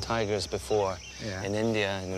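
Men's voices in conversation, with a steady high-pitched chirring of insects in the grass behind them.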